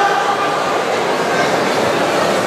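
Steady background noise of a large indoor sports hall, an even hubbub with no distinct strokes.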